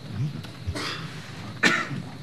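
A person coughing twice, less than a second apart, the second cough louder.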